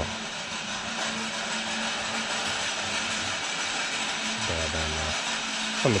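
Steady background hiss of a large store's open interior with a faint constant hum. A man's brief murmured "hmm" about four and a half seconds in, and speech resumes at the very end.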